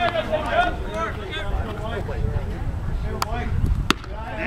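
Voices of players and spectators calling and chattering over a low wind rumble on the microphone; near the end a single sharp crack of a baseball bat striking the pitch.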